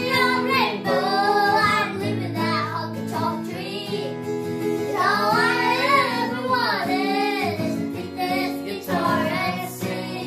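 Two young children, a girl and a boy, singing together to an acoustic guitar, with a long held sung phrase about halfway through.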